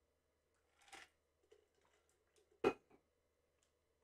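Drinking from a stainless steel tumbler: a faint sip about a second in, then one short sharp sound about two and a half seconds in.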